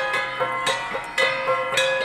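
Ensemble of Cordillera flat bronze gongs (gangsa) struck in an interlocking rhythm. There are several strikes a second, each note ringing on with a bright metallic tone.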